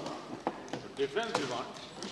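Pause in speech in a large debating chamber: faint voices in the background and a few short knocks at irregular intervals.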